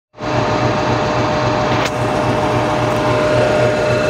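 Diesel locomotive engine idling at a standstill: a steady, pulsing low throb with a constant whine over it.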